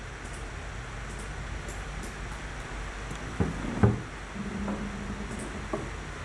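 Quiet room tone with steady microphone hiss. Two soft clicks about half a second apart come midway, followed by a short faint low hum.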